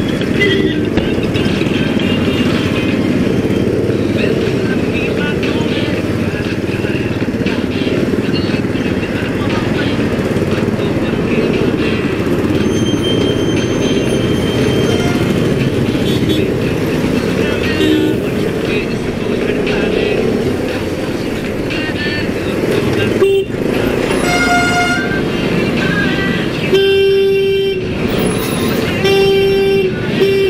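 A steady low rumble of motorcycle and traffic engines in slow, congested town traffic. Vehicle horns honk three times in the last several seconds, the middle one held for about a second and a half.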